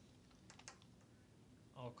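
Near silence with a few faint, quick clicks about half a second in: hands handling the tablet and the remote speaker microphone. A short spoken word comes near the end.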